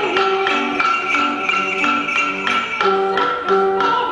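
Piano playing an evenly paced accompaniment of struck chords, several notes a second.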